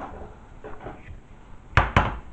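Light handling noise from an LCD monitor's metal frame and panel being moved about, then two sharp knocks in quick succession near the end as the metal parts hit the table.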